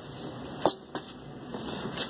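A sharp click a little after half a second in, then a fainter click, over steady low background noise.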